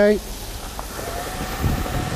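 Breakfast-bacon strips sizzling as they go into a hot wok already frying chicken and mushrooms, over a steady background of traffic and wind. A brief low rumble swells near the end.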